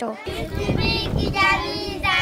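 A group of children's voices calling and chanting together, over a steady low background rumble of street noise.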